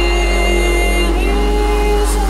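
Electronic music from a Goa/psytrance DJ mix: sustained synthesizer chords held over a steady deep bass, with no drum hits.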